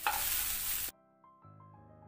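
Diced snake gourd and carrot sizzling in a hot kadai as a wooden spatula stirs them. The sizzle cuts off suddenly about a second in, and soft background music follows.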